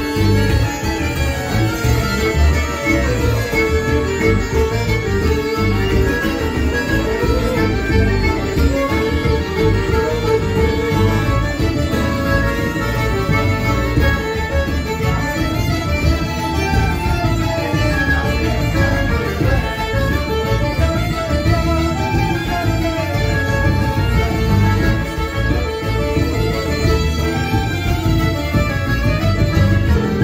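Live traditional folk dance tune played by a band, led by fiddle with diatonic accordions, playing steadily throughout.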